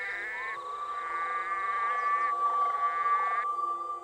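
Red-eyed green frog (Litoria chloris) calling to attract a mate: three drawn-out calls in a row that stop a little after three seconds in. A steady high tone fades in beneath them about a third of a second in.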